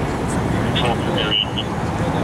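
Busy street traffic running steadily, with people's voices in the background and a few short high-pitched tones near the middle.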